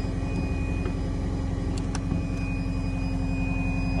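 Diesel engine of a Caterpillar 259D compact track loader running steadily, heard from inside the cab, with a couple of faint clicks about two seconds in.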